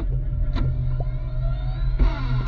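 Tank engine and running gear rumbling steadily, with scattered clicks and a whine that rises in pitch through the second half.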